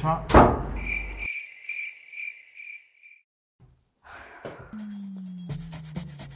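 A sharp thud near the start, then a run of about six short, high, evenly spaced chirps lasting about two seconds.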